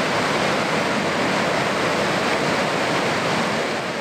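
Water pouring over a dam gate into the pool below: a steady, loud rush of falling water.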